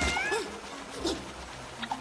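Cartoon ant characters making short, wordless, high-pitched vocal sounds with wavering pitch, a few brief calls spread over two seconds.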